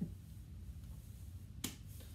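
A single sharp click about one and a half seconds in, over a faint low hum.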